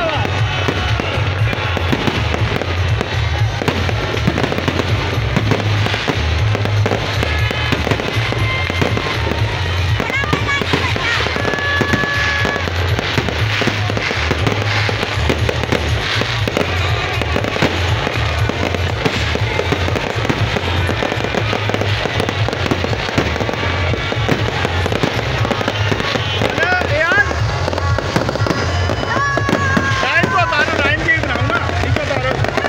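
Aerial fireworks bursting and crackling without pause. Loud music with a heavy bass and crowd voices run beneath.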